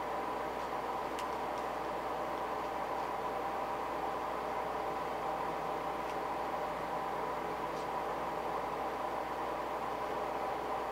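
A steady machine hum with a constant pitch fills the room, with a few faint small clicks from a pointed tool being worked into the hook holes of an epoxied lure.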